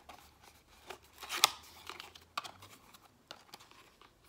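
Packaging being handled and opened by hand: scattered rustles and small clicks, with one sharp click about a second and a half in.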